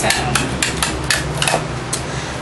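A quick, uneven run of sharp clicks and taps, about four a second, as a mini rollerball perfume set is handled and opened, with a steady low hum underneath.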